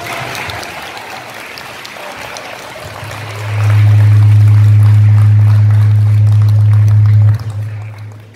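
Audience applauding, fading over the first few seconds. A loud, steady low hum then comes in about three and a half seconds in, holds for about four seconds, and cuts off suddenly.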